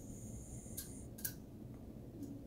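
Two faint ticks of a wooden toothpick pushing at the stuck plastic fan blades of a 1:200 diecast airliner model's engine, with a thin steady high whine over the first second.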